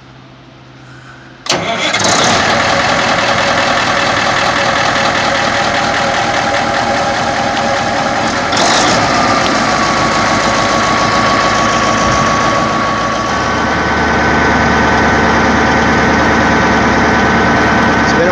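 550-horsepower Caterpillar diesel engine of a tub grinder starting: a faint hum, then it catches about a second and a half in and runs loud and steady. Its note shifts about halfway through and again a few seconds later.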